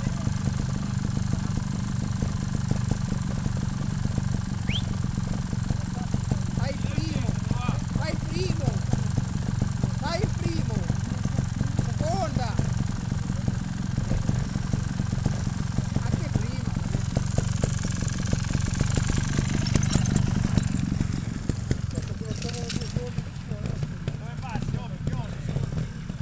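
Trials motorcycle engines idling steadily, a low even pulse that eases off slightly about twenty seconds in, with faint distant voices now and then.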